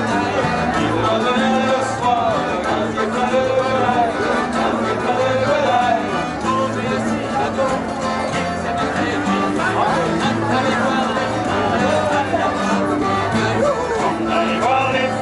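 A live acoustic folk band playing and singing: several strummed acoustic guitars, a plucked long-necked string instrument and a diatonic button accordion, with men singing over a steady rhythm.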